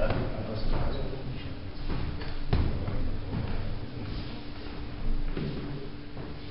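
Scattered sharp knocks and clacks, about five in all with the loudest around two and a half seconds in, over a steady low hum in a snooker room.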